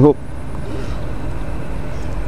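Steady outdoor background rumble and hiss, even throughout with no distinct events, just after the end of a spoken word.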